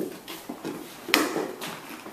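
Light clicks and knocks as an electric Turkish coffee pot is lifted and moved to a porcelain cup and saucer on a table, with one sharp knock about a second in.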